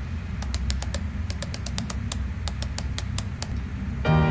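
Quick, uneven typing clicks, the on-screen text sound effect of a computer report being typed out character by character, stopping about half a second before the end. A low steady hum runs underneath.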